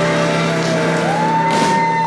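Live rock band, with electric guitars, bass guitar and drums, holding out the final chord of a song. A low bass note sustains underneath while a high note bends upward about halfway through and is held.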